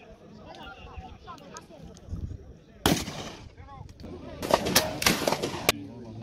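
A single shotgun shot at a clay target about three seconds in, a sharp crack with a short echo trailing after it. In the last second and a half there is a run of sharp clicks and knocks.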